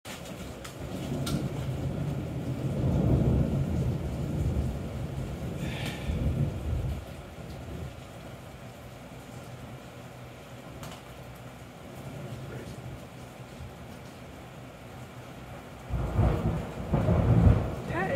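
Thunder rolling over steady rain. A long low rumble builds and fades over the first several seconds, then rain is heard alone. A new peal of thunder breaks in suddenly near the end.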